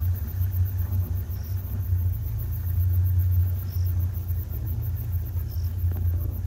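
A vehicle engine idling, a steady low rumble.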